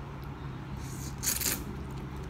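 A person slurping a mouthful of ramen noodles: a short hissing slurp a little under a second in and a stronger one around a second and a half in, over a low steady hum.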